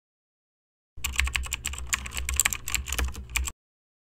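A rapid run of sharp clicks over a low hum, lasting about two and a half seconds. It starts abruptly about a second in and cuts off just as suddenly.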